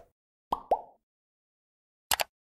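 Two quick cartoon pop sound effects about half a second in, a fifth of a second apart, each a short blip that falls in pitch.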